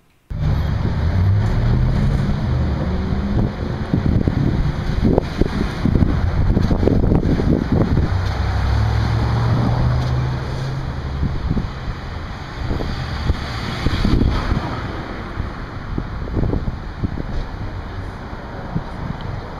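Wind buffeting the camera microphone, a loud, uneven rumble over street noise, with a low steady hum rising for a few seconds in the middle.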